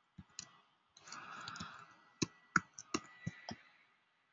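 Sharp clicks of a computer keyboard and mouse, two near the start and about five more over the second half, with a short soft rush of noise about one to two seconds in.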